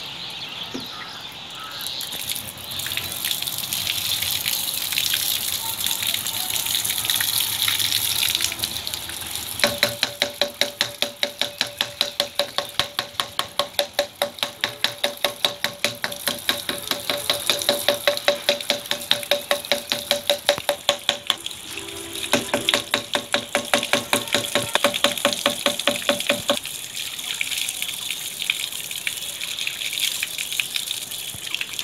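Water gushing and splashing from a whole-house water filter housing and its PVC pipe onto a wet concrete floor. From about ten seconds in until near the end, a fast, even pulsing of about four beats a second over a steady tone runs alongside, with a short break partway through.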